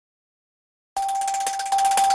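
Silence for about a second, then a news channel's logo jingle starts abruptly: one steady held tone under a fast, shimmering high sparkle.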